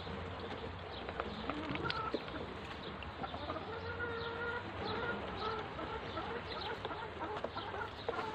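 A flock of Muscovy ducklings peeping, many short calls overlapping one another.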